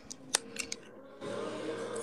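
A few faint, short clicks in the first second, then a steady low hiss from about a second in.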